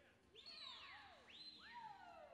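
Two high-pitched whistles from spectators, each shooting up and then sliding slowly down in pitch, about a second apart.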